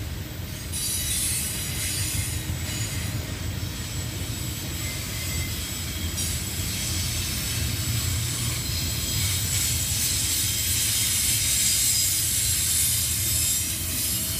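Double-stack intermodal freight train passing: well cars rolling by with a steady low rumble and high-pitched wheel noise, growing a little louder in the second half.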